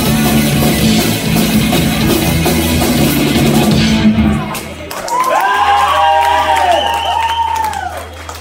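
Punk rock band playing live on electric guitars, bass and drum kit, the song stopping abruptly about four seconds in. After a short gap, high wavering calls from the crowd ring out over a steady low amplifier hum.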